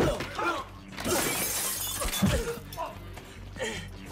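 Glass shattering about a second in, lasting about a second, in a film fight's sound track, followed by a dull thud just after two seconds.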